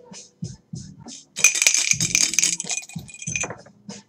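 Two dice rattling as they are shaken in a hand for about two seconds, then rolled out onto a cloth mat.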